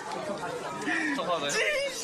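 Young men's voices talking and chattering over each other.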